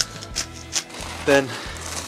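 Handheld pepper grinder grinding black pepper in a few short crackling turns during the first second, over steady background music.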